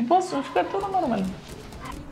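A woman's voice drawing out a few syllables that slide down in pitch and trail off after about a second.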